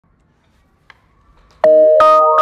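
Near silence with a faint tick, then about one and a half seconds in a logo intro jingle starts suddenly with a loud, held synthesizer chord.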